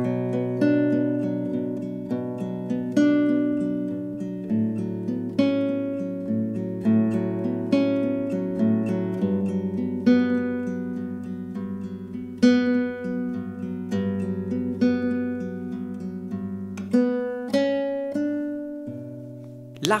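Nylon-string classical guitar fingerpicked in an extended thumb-index-middle-ring arpeggio: eight even eighth-note plucks to the bar on the fifth to second strings, each note ringing on. The bass note steps down with the chord changes, twice in the first ten seconds.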